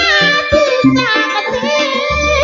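A woman singing a Banyuwangi melody through a microphone, her voice gliding and bending between notes, with low drum strokes from a kuntulan ensemble's drums beneath.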